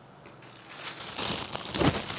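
Soft rustling of paper pattern pieces being handled, starting faintly about half a second in and growing a little louder toward the end.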